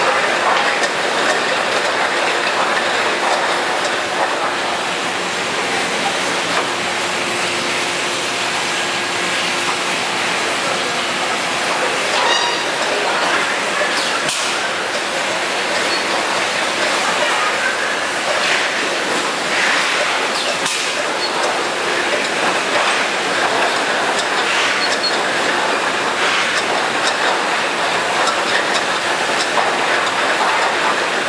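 Bottle filling and capping line for edible oil running: a steady mechanical clatter of conveyors and empty plastic bottles, with occasional sharper clanks.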